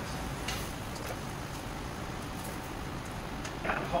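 Metal tongs clicking a few times against the chargrill and tray as chicken pieces are lifted off, over a steady hiss from the lit chargrill.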